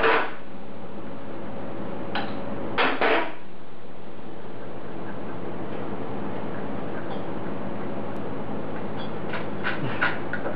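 Hand tools knocking and clinking on the alternator's mounting bolt: a few sharp metal clanks at the start and about two to three seconds in, then a run of quick clicks near the end, over a steady hum.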